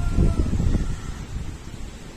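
Gusty wind blowing over the microphone and through the surrounding trees and leaves, as a rainstorm comes on. The gusts are strongest in the first second, then ease off.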